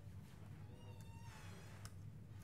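Quiet room hum with a brief faint squeak about a second in, then a single laptop key click near the end as a typed command is entered.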